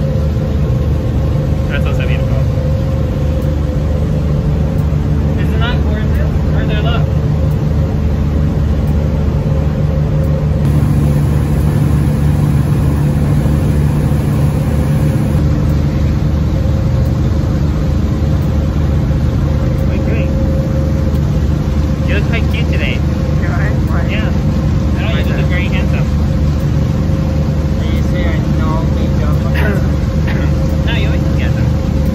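Passenger ferry's engine droning steadily with a low hum, with short bursts of voices over it now and then.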